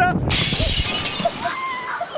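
Glass-shatter sound effect: a sudden crash of breaking glass about a third of a second in, dying away within about a second. It goes with a cracked-screen graphic, a gag that the thrown camera has broken.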